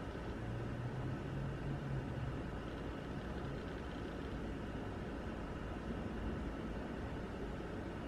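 Steady low hiss of room noise with no distinct sound events, and a faint low hum during the first couple of seconds.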